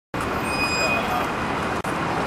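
City street traffic noise with voices mixed in, starting abruptly, and a brief high-pitched tone in the first second.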